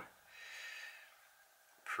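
A person's soft breath, lasting just under a second.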